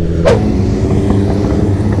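Motorcycle engine running steadily under low wind noise on the bike-mounted microphone. About a third of a second in there is a short sharp sound, and the engine note changes at once to a different steady pitch.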